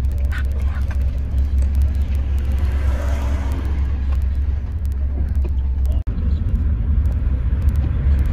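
Inside a moving taxi: a steady low rumble of the car's engine and tyres on the road, with scattered faint clicks. The sound briefly cuts out about six seconds in.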